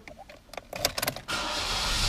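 A few clicks, then the car's climate-control blower fan comes on with a steady rush of air a little past halfway through.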